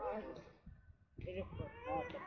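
Faint speech only: a few short words from people, one of them saying "evet".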